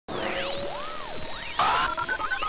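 Electronic intro sting: swooping synthesized tones rise and fall over a steady high whine. A louder burst comes in about one and a half seconds in, followed by a run of short, stepped electronic notes.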